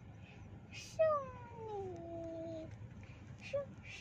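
A young girl imitating a cat: one long meow about a second in that falls in pitch, then a short squeak near the end.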